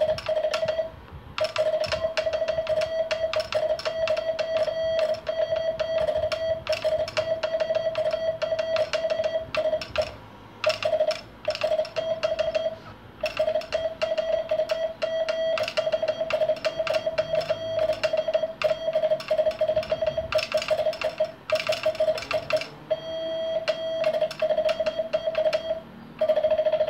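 Semi-automatic Morse 'vibro' bug key sending long runs of very rapid dots, heard as a fast-chopped beep of one pitch with the key's clicking, broken by a few short pauses. The speed weight is off its arm, so the dots come at the key's fastest rate.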